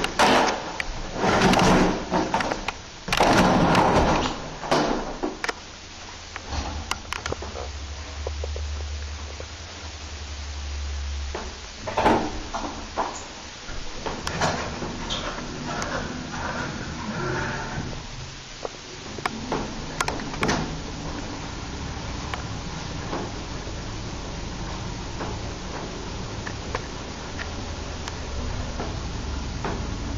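Large Otis-modernised passenger lift in operation. A burst of loud clattering and knocks from its doors and car comes first, then the low hum of the car travelling. A sharp knock follows, with more door rattling and knocks, and the low hum returns near the end.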